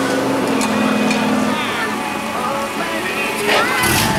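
A Ford Mustang's turbocharged 2.3-liter four-cylinder running at low speed as the car rolls along, with voices and music mixed in behind it.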